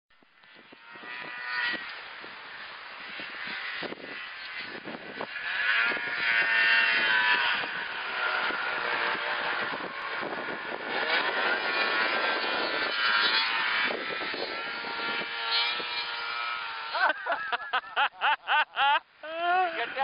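Snowmobile engine running while the sled carves turns, its pitch rising and falling with the throttle. In the last few seconds it gives way to a rapid, choppy fluttering.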